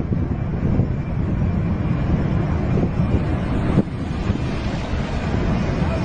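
Steady low rumble of wind buffeting the microphone, over the distant engines of a four-engined Boeing 747 on the runway. A single knock about four seconds in.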